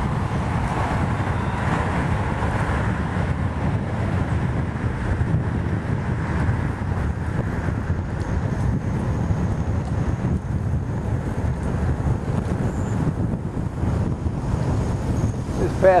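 Wind buffeting the microphone of a camera on a moving bicycle: a steady low rumble.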